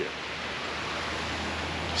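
Steady hiss of flowing river water, even and unbroken.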